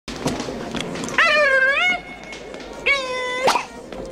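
A man's voice imitating an animal call: two drawn-out, high cries, the first about three-quarters of a second long and wavering in pitch, the second shorter and steadier, bending down at its end.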